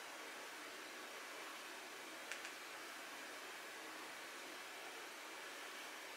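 Quiet room tone: a steady, even hiss with one faint click about two seconds in.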